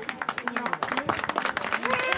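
A small crowd applauding: many hands clapping in quick, close-spaced claps, with voices talking underneath.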